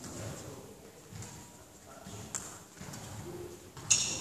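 Footsteps thudding on a badminton court floor as a player moves, then just before the end one sharp, loud crack of a racket striking a shuttlecock, its strings ringing briefly.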